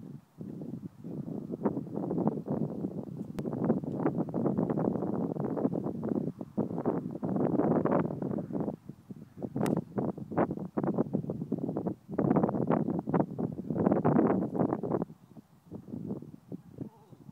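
Wind buffeting the microphone in uneven gusts that rise and fall. Two sharp clicks cut through it, a few seconds in and again about ten seconds in.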